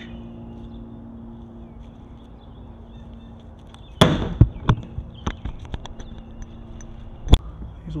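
Sharp knock about four seconds in as a plastic scrub brush is set down on the top of a plastic IBC tote. It is followed by a string of lighter knocks and clatters on the tote and its steel cage, and one more sharp knock near the end. A steady low hum runs under the first half.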